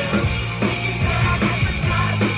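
Live rock band playing at full volume: electric guitars, bass and a drum kit with steady drum hits, in a punk-rock style.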